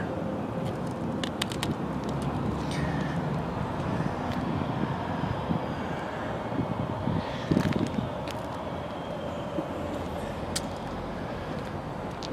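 Steady outdoor background noise of distant road traffic, with a few short faint clicks scattered through.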